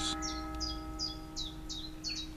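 A small bird calling a quick run of short, high notes, each sliding downward, about two or three a second, over a steady low hum.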